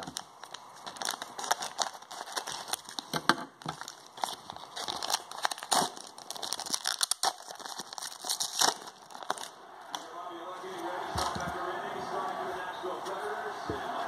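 Plastic wrapper of a trading-card pack crinkling and tearing as it is pulled open by hand, a run of irregular sharp crackles.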